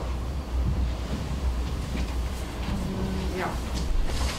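Steady low rumble with faint handling noise from a handheld microphone as it changes hands between speakers.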